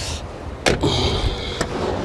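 Rear passenger door of a 2003 Samsung SM520 sedan shut with one sharp slam about two-thirds of a second in.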